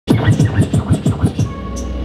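A DJ scratching a sample on the decks: a quick run of about seven back-and-forth sweeps, each dropping and rising in pitch. After about a second and a half the scratching gives way to a steady low bass tone.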